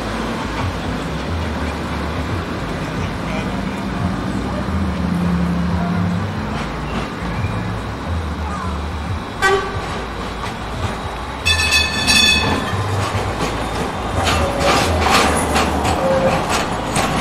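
A Bombardier CR4000 tram sounds its warning horn as it approaches on street track: a short note about nine and a half seconds in, then a longer, higher note lasting about a second. Near the end come rattling and clattering as the tram passes close on the curve, over a steady low street hum.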